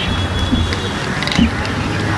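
Steady low rumble of road traffic in the background, with a few brief murmurs of voice.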